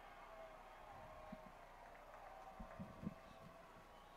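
Near silence: a faint steady background with a few soft low thumps in the second half.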